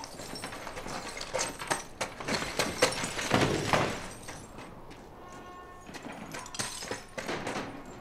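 A fight in a wrecked room: a run of sharp knocks, scrapes and crunches of broken glass, loudest about three seconds in.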